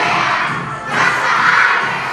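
A group of young children shouting and cheering together, with a brief lull just before a second in.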